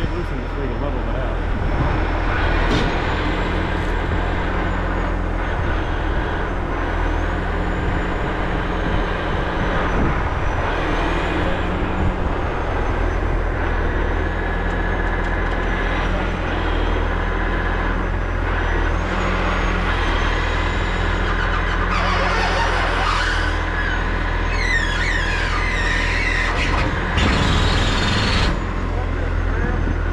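Diesel engine of a heavy rotator tow truck running steadily to drive the boom's hydraulics as it lifts a trailer, with a faint wavering high whine above the engine. Two short bursts of hiss come near the end.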